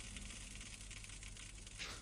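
Faint room tone: a steady low hum with a soft hiss over it, and no clear events.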